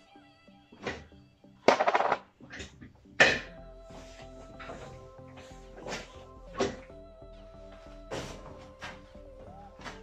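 Weight plates being loaded onto an Olympic barbell: a loud rasping scrape about two seconds in, a sharp clank just after, then several lighter knocks as the bar is readied, over steady background music.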